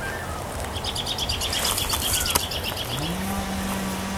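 A songbird's rapid trill of short repeated high notes lasting about two seconds, over a steady low background noise. Near the end a low hum rises in pitch and then holds steady.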